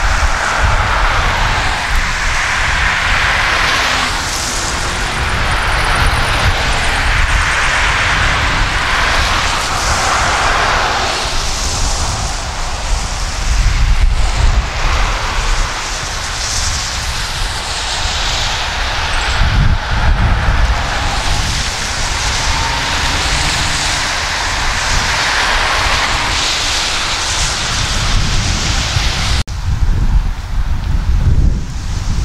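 Road traffic: cars driving past one after another, their tyre and engine noise swelling and fading every few seconds, over a constant low rumble of wind on the microphone.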